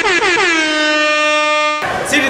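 DJ air horn sound effect: a rapid run of short blasts that merges into one long held blast, cutting off abruptly near the end.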